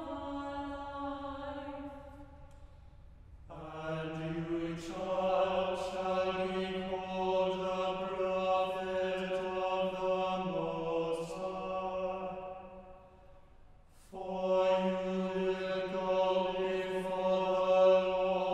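Small mixed choir singing in long, held chordal phrases. The singing dies away into a brief pause about two seconds in and again shortly before the last few seconds, then starts again.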